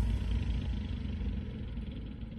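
Leopard battle tank's diesel engine running with a low rumble as the tank fords deep water with its snorkel tower fitted, water rushing off the hull.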